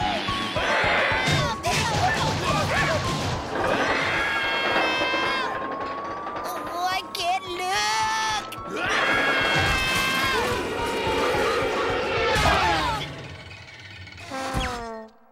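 Cartoon soundtrack: busy music score with wordless yelling and shrieks from the characters and crash effects. A long rising whistle-like glide runs through the middle.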